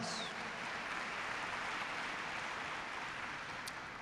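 Audience applauding in a large hall, a steady even clatter that eases slightly toward the end.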